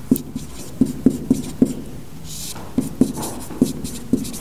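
Hand writing during a lecture: a run of short, irregular taps with a brief scratchy stroke a little past the middle, as letters are written out.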